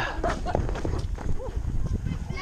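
Quick footsteps crunching over a bark-chip path close to the microphone, as its wearer hurries along. Short calls from other people come in between the steps.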